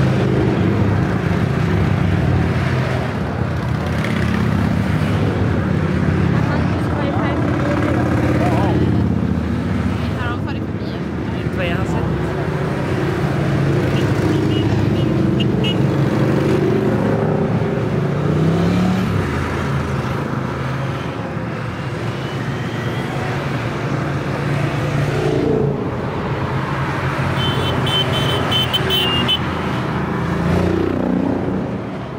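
A steady stream of motorcycles riding past one after another, their engines running in an unbroken mix whose pitch rises and falls as each bike goes by.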